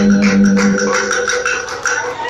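Live music ending: a long held low note fades out about a second in, while quick, regular clicks keep a beat and then thin out.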